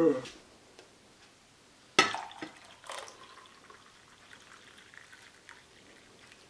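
A man's short grunt falling in pitch, then a sharp clack about two seconds in and a softer knock a second later, followed by faint kitchen clatter as coffee is made.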